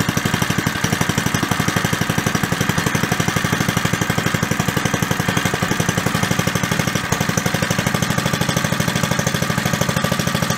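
Briggs & Stratton 2 HP single-cylinder four-stroke engine running steadily at an even, rapid firing beat.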